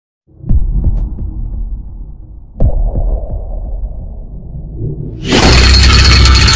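Cinematic intro sound effects: two deep hits about two seconds apart, each trailing off in a low rumble, then a loud crashing burst of noise starting about five seconds in.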